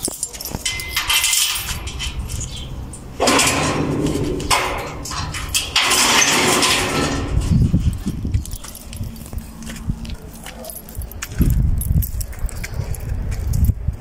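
Keys jangling and metal rattling in several bursts as a steel security gate is unlocked and opened.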